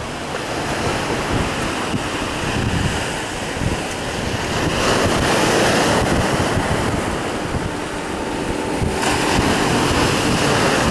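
Sea waves breaking and washing on a rocky shore, a steady surf wash that swells louder about halfway through, with wind buffeting the microphone.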